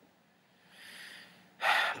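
A man's breathing while he holds back tears: a soft breath about a second in, then a louder, sharper breath near the end.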